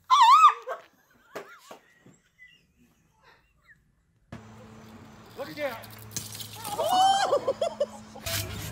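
A woman's voice: a short, high, wavering squeal at the start, then, over a steady low hum from about halfway, a run of high-pitched vocal sounds rising and falling in pitch.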